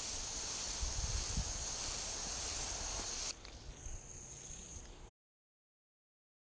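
Chapin hose-end sprayer spraying a weed-killer mix onto the lawn from a garden hose: a steady high hiss of water leaving the nozzle, which drops off sharply about three seconds in, leaving a fainter hiss.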